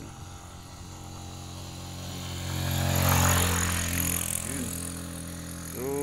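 A motor vehicle passing on the road: a low engine hum that swells to its loudest about three seconds in, then fades away.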